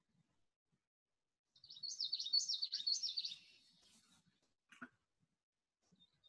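Common yellowthroat singing one song, a quick run of about four repeated up-and-down phrases, faint, from a recording made in a reed marsh.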